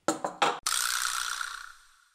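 A few quick metallic clicks, then a sudden clattering crash that rings and fades over about a second and a half, from a small silver metal food case being handled.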